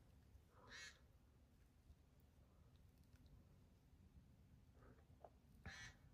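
Near silence: room tone, with two brief faint raspy sounds about five seconds apart, one just under a second in and one near the end.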